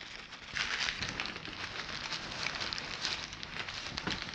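Packing material being handled and pushed into a cardboard box: a continuous run of light crackling and rustling.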